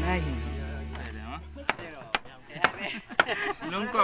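Background music fades out over the first second and a half. Then a large knife chops through watermelon onto a wooden board: four sharp knocks about half a second apart.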